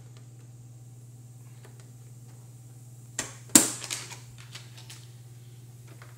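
Hard plastic toy pieces clacking: a click a little past three seconds, then a louder clatter just after, as the plastic roundhouse of a toy train set and its track pieces are handled. A low steady hum runs underneath.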